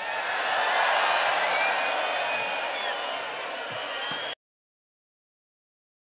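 Large concert crowd cheering, with a few whistles cutting through, then stopping abruptly about four seconds in as the recording cuts to silence.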